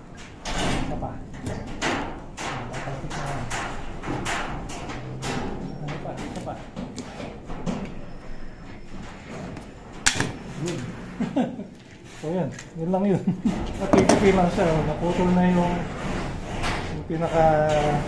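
People talking throughout, loudest over the last few seconds, with a single sharp metallic click about ten seconds in as the handles of a hand blind-rivet tool are squeezed.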